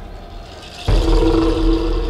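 Electronic intro sound design: a deep low rumble, then about a second in a sudden loud horn-like blast of two steady low tones over heavy bass, which holds to the end.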